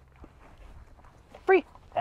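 A dog gives a single short, high whine about one and a half seconds in, over otherwise faint background.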